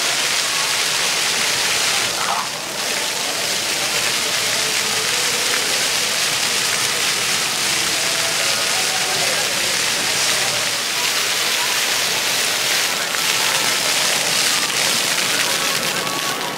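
Ground-level splash-pad fountain jets spraying and splattering onto wet pavement: a steady hiss of falling water, with faint voices of people around.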